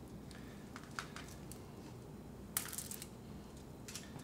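Faint crinkling and small clicks of aluminium foil on a baking sheet as hands wrap raw bacon around a stuffed chicken breast, with a short cluster of crinkles about two and a half seconds in.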